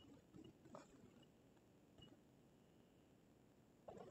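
Near silence: quiet room tone inside a car cabin, with a few faint ticks.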